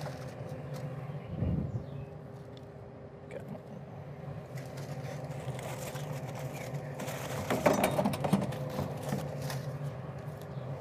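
A steady low mechanical hum with several fixed tones. There is a dull bump about a second and a half in, and a patch of clicks and handling rustle near the end.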